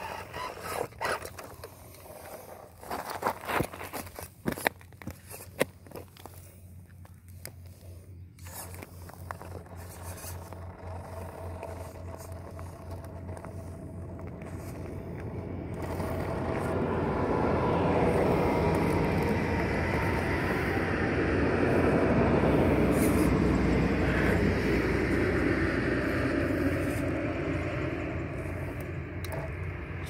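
1/10-scale Redcat Gen 8 RC rock crawler working up loose gravel. First comes a run of sharp clicks and clatters of stones under the tyres. From about halfway through a steady whir of the drivetrain under load, with tyres scrabbling in the gravel, grows louder, then eases near the end.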